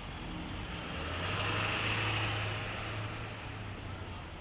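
A road vehicle driving past: a low engine hum and tyre hiss swell to a peak about two seconds in, then fade away.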